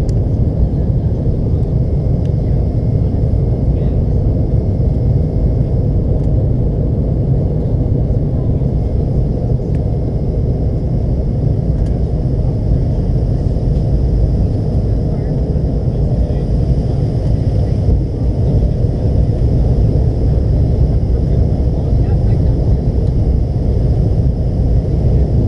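Steady low rumble inside the cabin of a McDonnell Douglas MD-88 airliner descending on approach: airflow over the fuselage and the jet's rear-mounted Pratt & Whitney JT8D engines, with a faint high whine held above it.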